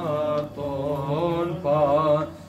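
A solo male voice chanting an Orthodox vespers hymn in Byzantine style, with long, wavering melismatic notes broken by two short breaks.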